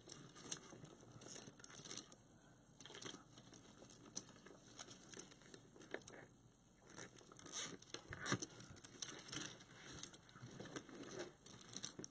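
Poly deco mesh rustling and crinkling as it is gathered and pressed onto a wreath board, in short, irregular bursts of faint crackle and small ticks.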